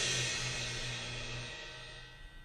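The last chord of a punk song dying away: cymbals ringing and fading out, over a low held note that stops about one and a half seconds in.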